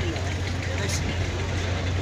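A steady low engine hum, as of a motor idling, under faint background voices.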